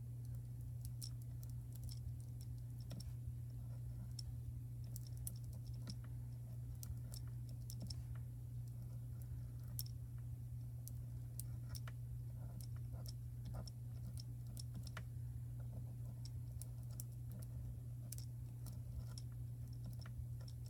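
Faint, irregular light clicks and ticks of a heated fuse-tool pen tip being drawn and pressed over foil on card stock, over a steady low hum.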